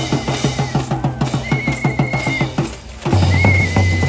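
Parade drumming with a fast, even beat of about six strokes a second and heavy bass. It breaks off briefly about three seconds in. Over it a whistle is blown three times, long steady blasts of about a second each.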